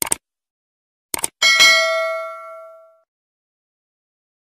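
Subscribe-button animation sound effect: short mouse clicks, first at the start and then twice a little after a second in, followed by a single bright bell ding that rings and fades away over about a second and a half.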